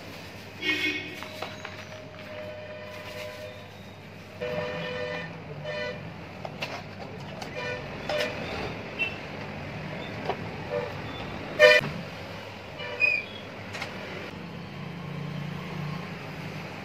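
Street traffic noise with vehicle horns honking several times, the loudest about two-thirds of the way through, over a steady low hum. A few sharp clicks come in between.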